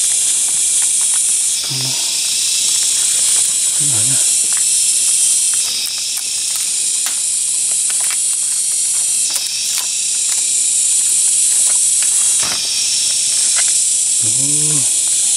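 Loud, steady high-pitched drone of jungle cicadas, its level shifting up and down every few seconds. Scattered cracks and snaps of dry branches under a person's sandals as he climbs through fallen wood.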